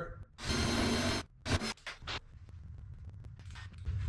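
Cordless drill running for about a second as a quarter-inch bit enlarges a pilot hole in aluminium, the hole being stepped up in size. A few short blips follow.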